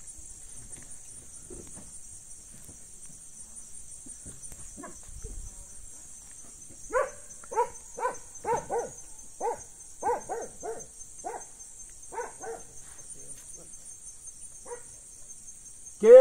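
Crickets chirping in a steady high-pitched chorus. A dog barks about a dozen times in quick succession between about seven and thirteen seconds in.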